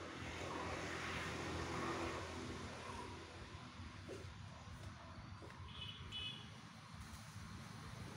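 Faint outdoor ambience: a steady low rumble with a few short faint chirps in the first few seconds, and a brief high-pitched call about six seconds in.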